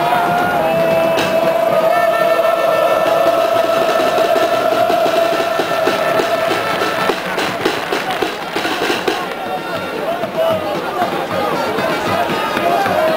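Large crowd of football ultras singing in the stands, one long note held steady for about seven seconds, then a quick flurry of sharp claps or bangs a little past halfway before the chanting carries on.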